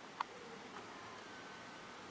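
BMW i8 locking from its key fob: a single short click about a fifth of a second in, then a faint, steady whirr of the electric wing-mirror motors as the mirrors fold in.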